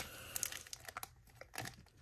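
Faint crinkling and rustling of plastic comic-book sleeves being handled, with scattered soft ticks.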